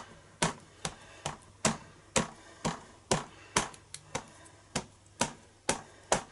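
A Memento ink pad dabbed again and again onto a rubber stamp, about a dozen short taps roughly two a second. The stamp is being re-inked for a second, darker impression.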